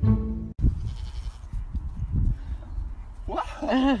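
Music cut off about half a second in, then a goat bleating with a wavering call near the end.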